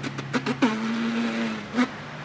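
Beatboxing: a quick run of mouth clicks and snare hits, then a held, low buzzing vocal note for about a second, closed by one more hit near the end.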